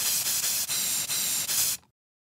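Aerosol spray-paint can hissing in a few spurts, then cutting off sharply near the end.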